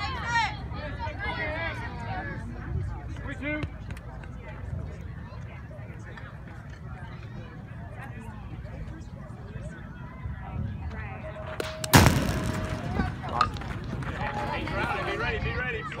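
An aluminum baseball bat hits a pitched ball about twelve seconds in: one sharp ping with a brief metallic ring, the loudest sound here, over spectators talking.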